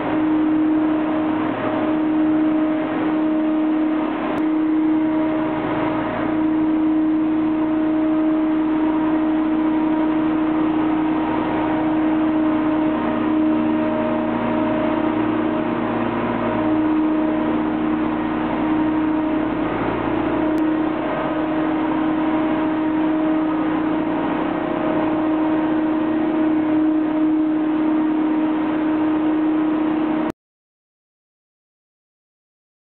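Tunnel wall-washing truck's engine and brush machinery running at work, a steady droning hum that hardly changes.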